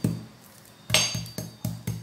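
A metal spoon striking garlic cloves held on a countertop: a run of about five sharp knocks, roughly four a second, starting about a second in. The cloves are being bashed to loosen their skins for peeling.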